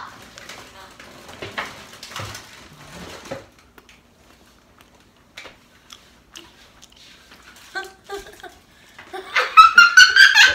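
A person biting into and chewing a crisp air-fried potato cookie, faint crunching and mouth noises for the first few seconds, then quiet. Near the end, high-pitched giggling and voices come in loudly.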